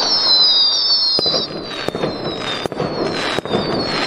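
Fireworks going off: several sharp bangs over a rough crackling rumble, with high whistles that fall slowly in pitch.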